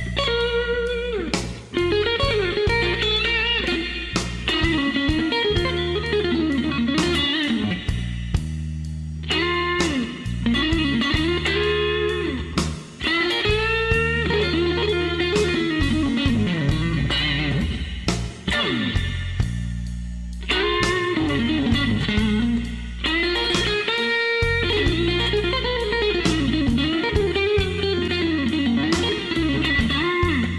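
Slow blues instrumental: an electric guitar lead with bending, sliding notes over a steady bass line and drums.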